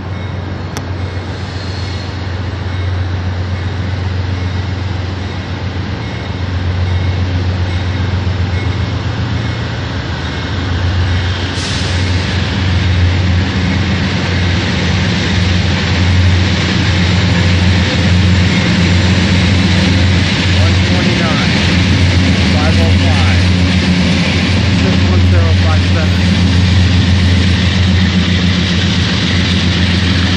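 Amtrak Coast Starlight pulling out behind its diesel locomotives: a deep, steady engine hum under rushing rail noise that grows louder, with a short hiss about a third of the way in.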